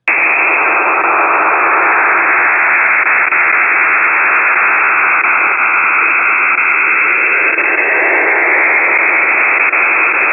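Shortwave radio receiver audio of an encrypted military data transmission on the primary U.S. nuclear command frequency: a steady, loud static fuzz with no voice or distinct tones, thin and band-limited as radio audio is.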